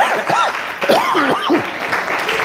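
A man laughing in a few short rising-and-falling whoops while applause fades away.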